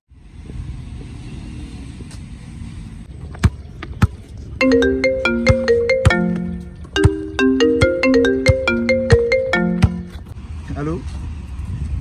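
A basketball bouncing on a concrete court gives a couple of sharp knocks. Then a mobile phone ringtone plays a short stepped melody twice over about five seconds, and a voice comes in near the end.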